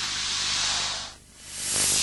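A loud hissing noise that swells, fades out abruptly just past a second in, then swells again to its loudest near the end.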